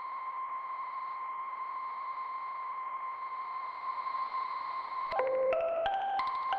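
A single steady high-pitched electronic tone over a soft hiss. About five seconds in, a tune of short mallet-like notes starts: the end-credits music.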